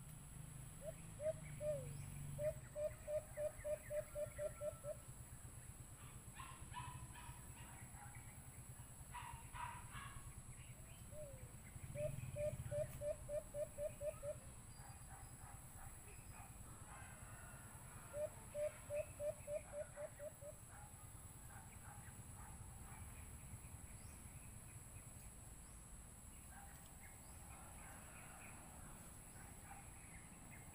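White-eared brown dove calling: three runs of quick, short hooting notes, about four a second, each run lasting two to three seconds and spaced several seconds apart. Fainter, higher-pitched calls come between the runs.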